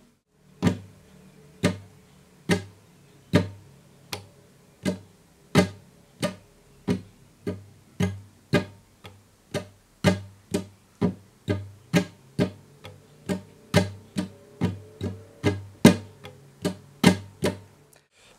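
Nylon-string flamenco guitar strummed in the rumba compás with the thumb and fingers, the same chord ringing under every stroke. The strokes come slowly and evenly at first, then closer together at a quicker steady pulse from about halfway.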